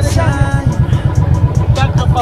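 Motorcycle engine running in stop-start traffic: a dense, uneven low rumble, mixed with wind buffeting on the microphone.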